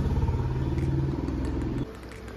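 A motorbike engine idling with a steady low, fast-pulsing hum, cutting off suddenly near the end.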